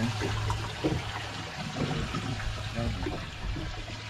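Water sloshing and trickling around a boat's hull at sea, over a low steady hum.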